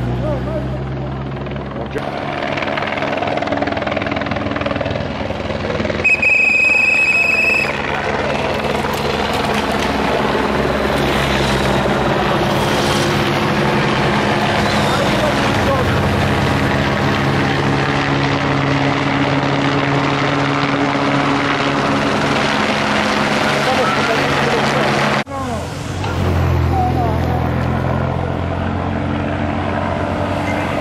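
Helicopter rotor and engine drone overhead, blending into the engines of race-convoy cars and motorcycles passing on the road. About six seconds in, a loud high steady tone sounds for about a second and a half.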